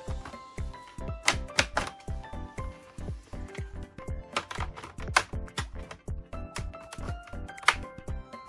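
Background music with a steady beat, over which a few sharp, irregularly spaced clicks sound. The clicks are the snap-fit clips of an Acer Nitro 5 AN515-57 laptop's bottom cover popping loose as it is pried open with a guitar pick.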